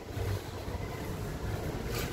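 Low, steady rumble of background noise with no distinct sound events.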